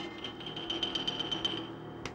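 Film soundtrack: a high ringing tone with a fast flutter of about ten pulses a second over a low sustained layer. The flutter stops near the end and the tone carries on steady and fainter.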